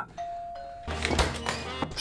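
Doorbell chime of two notes, a higher then a lower, followed by film music from about a second in.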